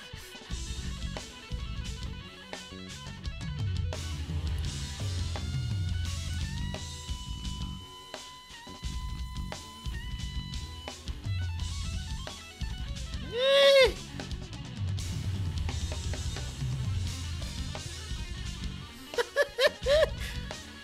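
Live band music: a drum kit with electric guitar and bass. About thirteen seconds in comes a loud short vocal 'oh', and a few more short exclamations near the end.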